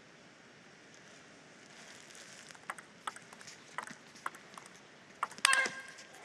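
Table tennis ball clicking off the rackets and the table in a short rally of sharp, separate hits about every half second, over a faint hall murmur. A brief loud squeak comes near the end.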